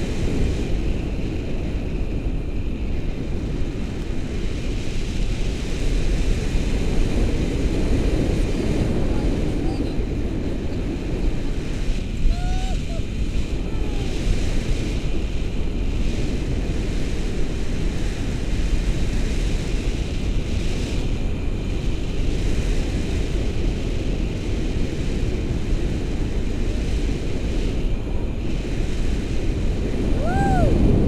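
Steady wind rushing over an action camera's microphone in paraglider flight, a loud low rumble of airflow. A short high gliding sound is heard briefly about twelve seconds in.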